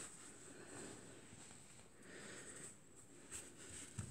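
Near silence, with a few faint, soft rustles of hands laying and smoothing a sheet of dough over another on a wooden board.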